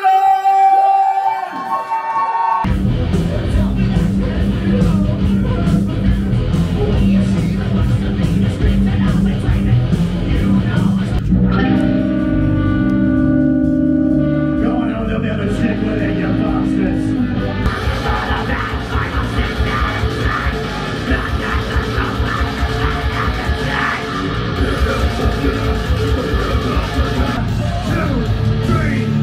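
Live metal band playing loudly: distorted guitars, bass, drums and vocals. The full band comes in about two and a half seconds in after a short held note, and thins to a sparser passage of held notes in the middle before the full band returns.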